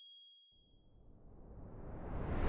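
Outro logo sting: the ringing tail of a high, bell-like chime fades away, and a rushing whoosh swells up from about half a second in.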